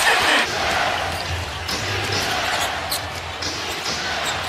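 Arena crowd noise, swelling briefly at the start, with a basketball bouncing on the hardwood court.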